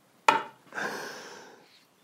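A man's short laugh, then a long exhaled sigh that fades out.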